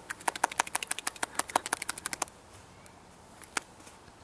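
One person clapping both hands together quickly, about nine claps a second for roughly two seconds, then a single clap near the end.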